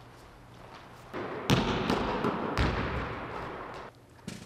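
A basketball bouncing on a hardwood gym floor. Several echoing bounces begin about a second and a half in, two of them louder than the rest.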